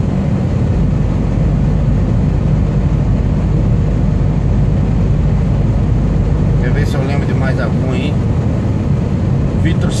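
Steady low drone of a Scania R440 truck's engine and road noise, heard inside the cab while cruising on the highway. A few faint words of speech come through about seven to eight seconds in.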